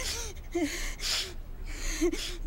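A woman crying: short wavering sobs broken by gasping breaths.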